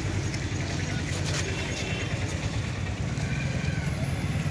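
A steady low rumble with faint, indistinct voices in the background.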